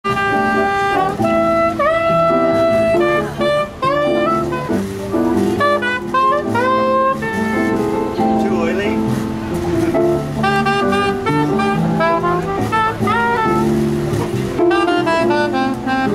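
Soprano saxophone playing a jazz melody, with notes scooped up into pitch and quick runs of short notes in the second half, over an accompaniment of held lower chords from a small amplifier.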